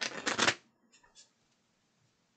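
Deck of tarot cards being shuffled: a brisk half-second burst of card noise, then two soft flicks about a second in.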